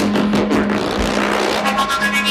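Modular synthesizer running a generative patch: a steady low drone under fast, dense clicking and shifting noisy textures.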